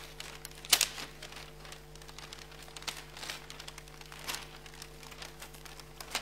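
Gift-wrapping paper crinkling and rustling in irregular bursts as a present is unwrapped slowly and carefully, loudest a little under a second in. A faint steady room hum runs underneath.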